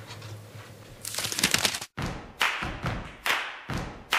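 A short slurp from a tea mug about a second in. After a sudden cut, acoustic guitar music starts halfway through with sharp, evenly spaced strums about twice a second.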